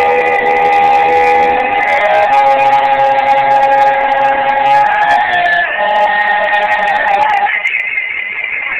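Music of long held notes, several pitches sounding together, moving to new notes about two seconds in and again around five seconds in.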